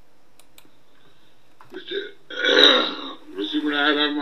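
A man's voice: a short, loud, noisy throat sound about two seconds in, then he starts talking.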